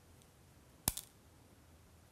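Two quick, sharp clicks about a second in, small hard pieces knocking together as beads, needle and thread are handled at the bead mat; otherwise faint room tone.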